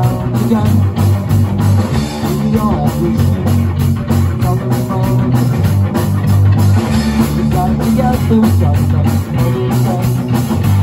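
Live rock band playing an instrumental passage: electric guitars, bass guitar and drum kit, with a steady drum beat.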